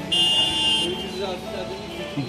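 A high-pitched, buzzy vehicle horn sounds once for under a second near the start, from street traffic below, over a low murmur of voices or background music.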